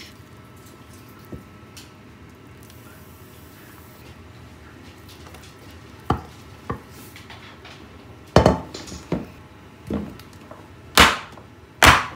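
Nonstick frying pan and silicone spatula knocking and scraping as thick cooked cassava mixture is tipped and scraped out into a cake tin. After a quiet first half there are a couple of light knocks, then several louder knocks and scrapes over the last four seconds.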